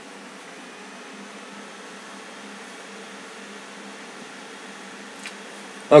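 Steady, even background hiss with a faint hum and no distinct events, apart from one faint tick about five seconds in.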